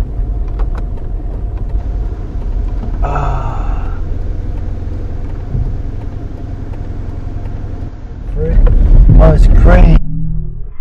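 Steady low rumble of a car's engine and cabin noise, with a brief hiss about three seconds in. Near the end the rumble swells much louder as the car drives on, with a voice over it.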